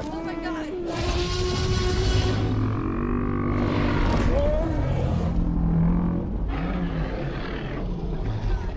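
Dinosaur roar sound effects for a long-necked Apatosaurus and a Tyrannosaurus rex: a run of long, pitched bellows and roars that rise and fall, louder from about a second in, with a short rising squeal near the middle.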